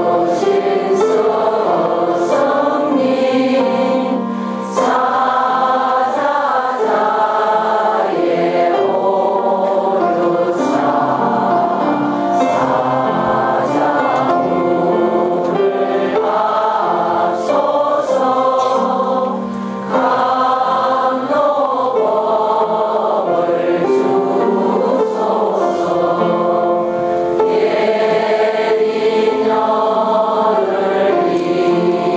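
A large congregation of many voices singing a slow melodic Buddhist devotional song together, with brief breaks between phrases.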